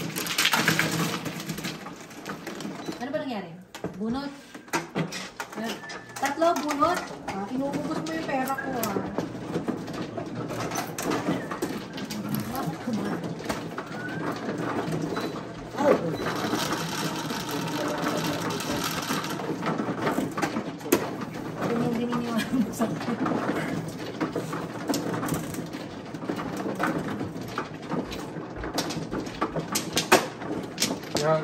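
An automatic mahjong table at work: tiles clatter as they are pushed in, and the table's motor runs while it shuffles and raises new tile walls. Voices murmur in the background.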